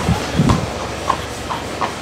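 A shod horse's hooves striking a tarmac path at a walk: a clip-clop of a few hoof beats a second.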